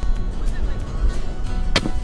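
A cloth bean bag landing on a cornhole board with a single sharp thud near the end, a throw that just misses the hole, over a steady low rush.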